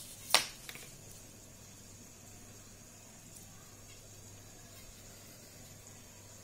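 A single sharp tap about a third of a second in, with a couple of faint ticks just after, then quiet room tone with a low steady hum.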